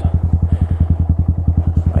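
2017 Honda Grom's 125cc single-cylinder engine running at low revs, its firing pulses steady and even, about twenty a second.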